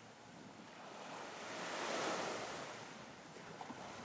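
Faint sea waves washing on a shore, one swell rising to a peak about halfway through and then ebbing.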